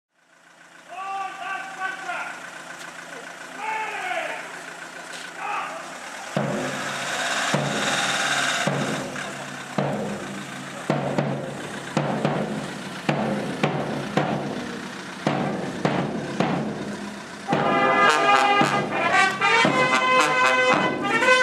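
Voices of a waiting crowd, then a marching brass band's drums start about six seconds in and beat time about once a second. Near the end the band's brass instruments strike up.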